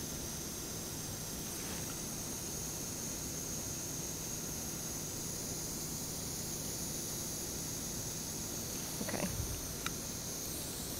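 Steady background hiss with a faint low hum, and no distinct event until a couple of faint brief sounds near the end.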